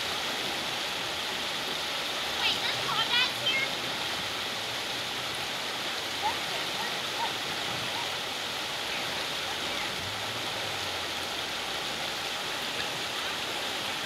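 Shallow river rapids rushing steadily over rocks. About two and a half seconds in, a brief burst of a high-pitched voice cries out over the water, with a couple of fainter voice sounds a few seconds later.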